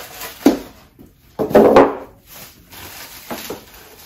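Cardboard and plastic packaging being handled as it is pulled out of a box: a short knock about half a second in, then a loud burst of rustling about a second and a half in, with lighter handling noises after.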